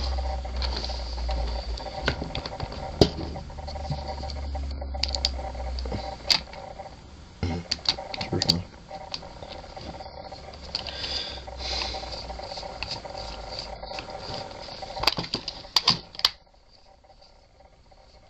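Irregular plastic clicks, knocks and scrapes from a screw being driven into an RC buggy's plastic chassis with a screwdriver while the car is handled, over a steady faint hum. The clicking stops about 16 seconds in.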